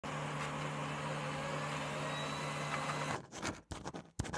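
A steady hiss with a low hum for about three seconds, which cuts off abruptly. Then short scratchy strokes begin: a marker pen writing on a whiteboard.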